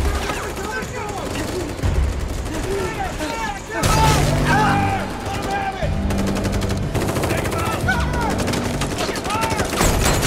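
Sustained automatic rifle fire, shot after shot in rapid bursts with hardly a break. It grows louder about four seconds in.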